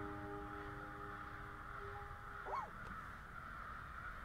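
The final chord of a banjo rings out and fades away over about two seconds. About two and a half seconds in, a single short bird call rises and falls.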